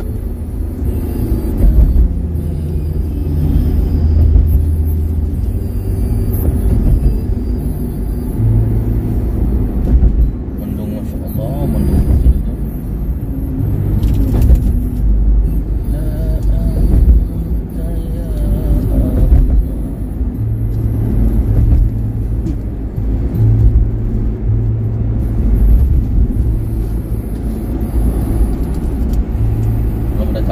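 Steady low road and engine rumble heard from inside a car cruising on a highway, swelling and easing a little, with faint voices at times.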